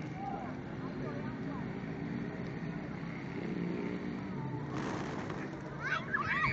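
Steady street background of vehicle hum and voices, with a sudden rush of pigeon wings flapping as the flock takes off, about five seconds in.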